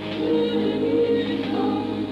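Soundtrack music with a choir singing long, sustained notes.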